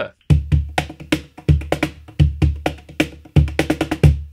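A Kopf Percussion cajon with a walnut body and Karelian birch burl tapa, played by hand in a steady groove that combines deep bass strokes with sharper snare-tone slaps near the top edge, where the cajon's internal snare system adds a rattle.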